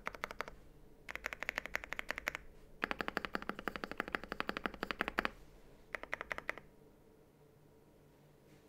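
Typing on a Meletrix Zoom 75 mechanical keyboard with WS Morandi linear switches, New Zealand Manor keycaps, full foam and an internal weight. Rapid keystrokes come in four bursts, the longest about two and a half seconds, and the typing stops a little over a second before the end.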